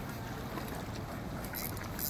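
Steady rushing of wind and surf at the shore, with a few faint ticks near the end.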